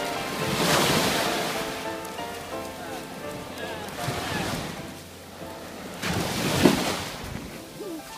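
Small waves washing up a sandy beach and bare feet splashing through the shallow surf; the wash swells loudly about a second in and again later on. Background music and a voice sit underneath.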